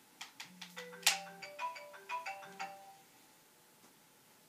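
Mobile phone ringtone playing a short tune of several distinct notes, after a few light clicks; the tune signals an incoming call, which is answered shortly after.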